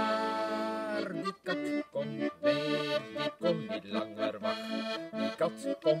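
Button accordion playing an instrumental passage between sung lines: a chord held for about a second, then short rhythmic chords at about two a second. A sung word starts the next line at the very end.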